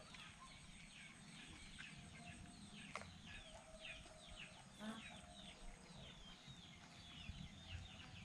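Faint, rapid high chirping from birds: many short falling notes, several a second, with a single sharp click about three seconds in.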